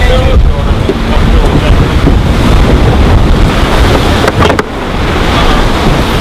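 Wind buffeting the microphone over the rush of sea water along the hull of an offshore racing yacht under sail, with a brief click about four and a half seconds in.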